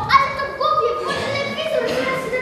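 Children's voices over a tune of held notes that step from one pitch to the next.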